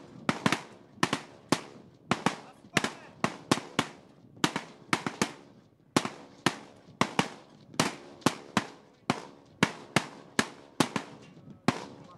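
Several Kalashnikov-pattern assault rifles firing single shots on a firing range. The shots overlap irregularly, about two to three a second.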